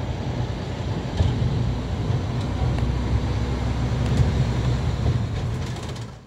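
Wind buffeting the camera's microphone: a steady low rumble with a thin hiss above it, which drops away at the very end.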